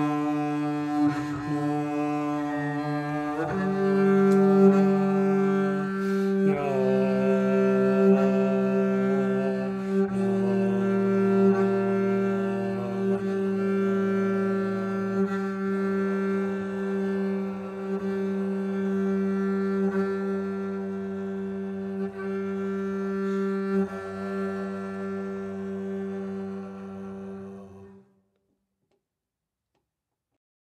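Solo double bass played with a bow: long, sustained low notes with rich overtones, changing pitch every few seconds. The playing stops abruptly near the end, leaving silence.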